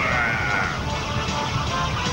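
Battle sound effects from a television action scene: a high, wavering cry during the first second over steady low rumbling.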